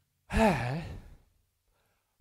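A man's breathy sigh, one short exhale with the voice gliding up and down in pitch, lasting under a second.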